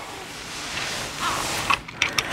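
Seat belt webbing pulled by hand out of its spring-loaded retractor, sliding with a rustle, and a short click near the end.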